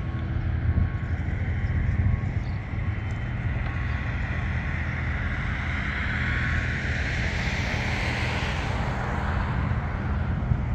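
Outdoor ambience: a steady low rumble with a passing vehicle, its noise swelling through the second half, loudest a couple of seconds before the end.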